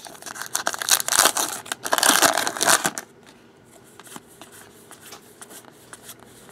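Trading card pack wrapper being torn open and crinkled for about three seconds, then fainter rustling and clicking as the cards are handled.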